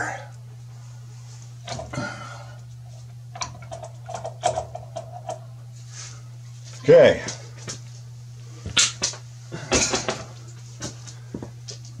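Scattered clicks and knocks of a clamp tool and plastic PEX fittings being worked by hand, over a steady low hum. A brief vocal sound comes about seven seconds in.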